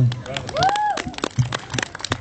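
Scattered applause from a small audience, with one voice calling out in a single rising-then-falling note about half a second in.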